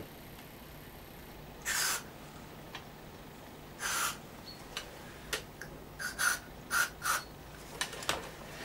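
Two short hisses of aerosol contact cleaner sprayed into a dirty volume control, about two and four seconds in, followed by a run of short clicks and brief puffs. The cleaning is done to cure a very quiet right-hand channel.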